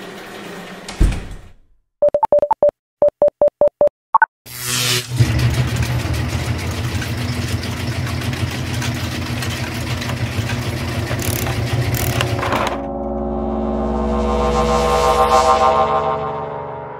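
Cartoon sound effects of a fantasy machine powering up: a thump, then a run of short electronic beeps, then a long, loud electric buzzing and crackling with a low hum as the machine sparks. Near the end this gives way to a swelling, shimmering tone.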